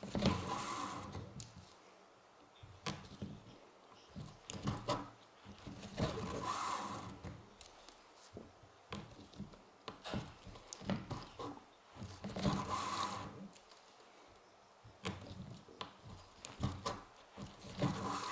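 Leather belt being hand saddle-stitched with two needles and an awl: the thread drawn through the leather in a drawn-out rasp about every six seconds, three times, with small clicks and taps of the awl and needles between.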